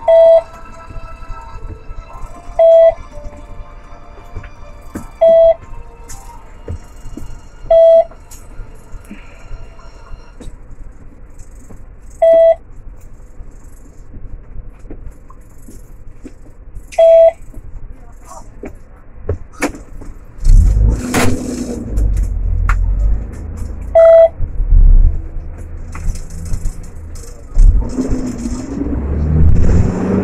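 Inside a taxi cabin, a short electronic beep sounds seven times at uneven gaps over a low idle hum. About two-thirds of the way through, a loud low engine and road rumble sets in as the taxi moves off.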